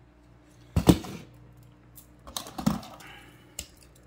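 Clicks and clacks of small die-cast metal toy cars being handled and set down. There is a sharp knock about a second in, the loudest sound, then a cluster of clicks just past the middle and one more click near the end.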